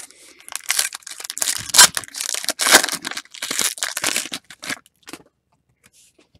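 A trading-card pack wrapper being torn open and crinkled by hand in a run of crackling tears and crumples, which stop about five seconds in.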